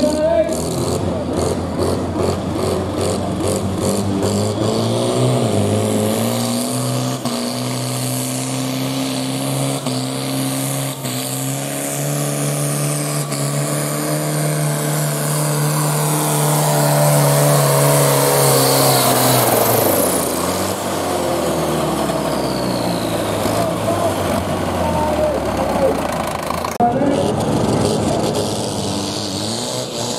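Diesel farm tractor engine under full load pulling a sled. The revs climb over the first several seconds and hold high for about twelve seconds. Around twenty seconds in they wind down, with a high whistle falling at the same time.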